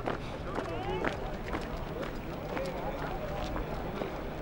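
A squad of soldiers marching in step on concrete, their boots striking together about twice a second, with voices in the background.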